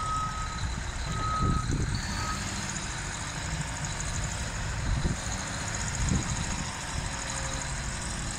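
Heavy earthmoving equipment's backup alarm beeping about once a second, three times in the first couple of seconds and then stopping, over the steady rumble of the machines' engines running.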